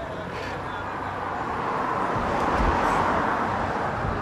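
Street ambience: a vehicle passing by, its noise swelling to its loudest around three seconds in, with a low thump near the peak.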